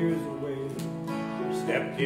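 Music led by an acoustic guitar, with held notes changing every half second or so.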